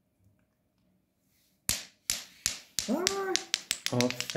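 A small ball dropping and bouncing on a hard marble floor: a quick run of clicks that come closer and closer together near the end. Before it there is a sudden scuff about a second and a half in, then a short whoop that rises and falls in pitch.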